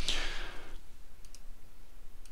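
A breath out that fades within the first second, then a couple of light clicks about a second in, from working at a computer.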